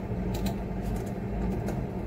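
A few scattered keystrokes on a computer keyboard, over a steady low room hum.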